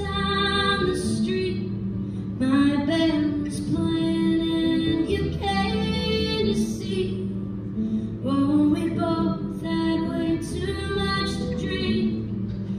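A woman singing in phrases with long held notes, accompanied by her own acoustic guitar, heard live in a theatre.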